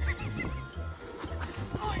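Background music with a steady bass beat, about two beats a second.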